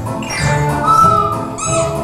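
Music from a children's ensemble of metallophones with hand percussion: struck bell-like notes ring over a steady melodic accompaniment.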